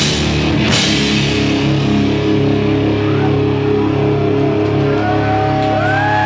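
Loud live rock band: drums and cymbals crash through the first second, then a guitar chord is left ringing on, with high tones bending up and down in pitch over it near the end.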